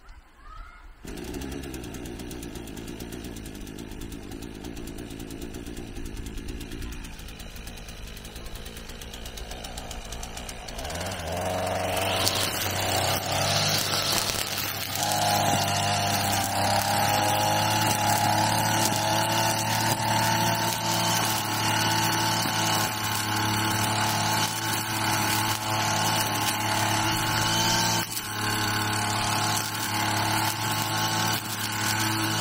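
Gasoline brush cutter engine: it starts about a second in and runs at low speed, then is throttled up about eleven seconds in and held at high speed as it cuts grass and weeds, with a brief dip near the end.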